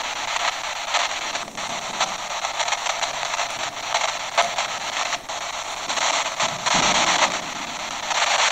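Spirit box (ghost box) sweeping through radio frequencies: a steady hiss of radio static, chopped by quick clicks and flickers as it scans.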